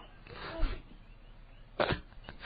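Quiet telephone-line hiss with a faint voice, then one sharp pop near the end.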